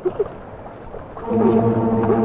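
Splashing, rushing water with a few short vocal cries. About a second in, a steady droning musical chord from the film score comes in, louder, and holds.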